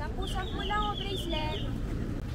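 A bird calling: a quick run of short, high, falling chirps, about eight of them over a second and a half.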